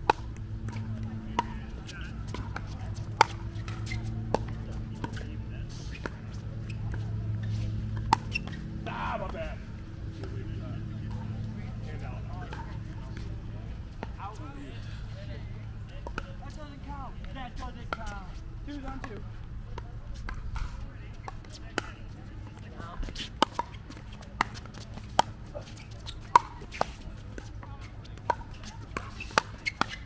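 Pickleball paddles striking a hard plastic ball, sharp pops at uneven intervals that come in a quicker run of hits near the end. Indistinct voices and a low hum run underneath.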